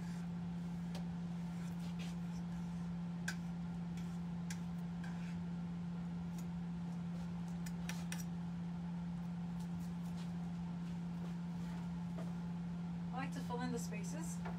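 Faint scattered clicks and rustles of artificial greenery picks being handled and worked into a grapevine wreath, over a steady low electrical-sounding hum. A brief murmur of voice comes near the end.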